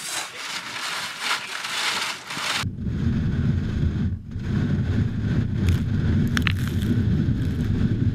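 Excavated soil being scraped and pushed across a wire-mesh sifting screen, a scratchy hiss. About two and a half seconds in, this gives way to a steady low rumble with a few faint clicks.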